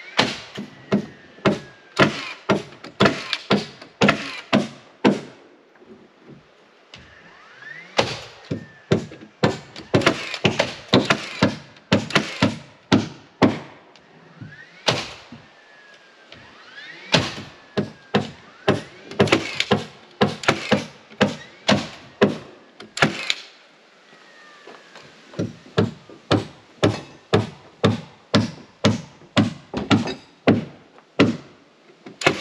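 Hammer driving nails into wooden wall framing: runs of sharp strikes at about two or three a second, each run broken off by a short pause before the next nail.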